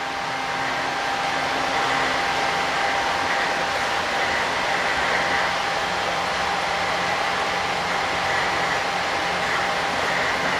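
Steady hiss and hum of running machinery, like a blower or fan, with a faint steady whine on top.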